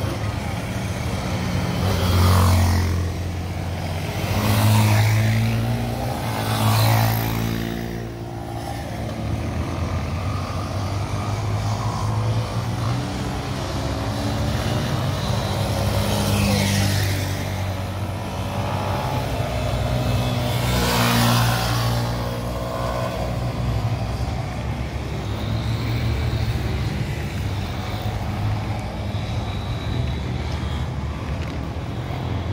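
Motorcycle engine running at low speed through a cone slalom, the revs rising and falling with the throttle, with louder revs about two, five and seven seconds in and again around seventeen and twenty-one seconds.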